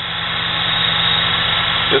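Small electric motor of a homemade mini lathe running, spindle turning at a steady speed with a constant hum.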